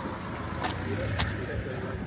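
A car driving past close by, its engine and tyre hum swelling and fading over a couple of seconds.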